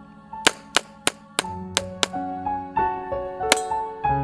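Pistol shots: six quick shots in the first two seconds, then one more after a pause, near the end. Background music with a melody plays under them.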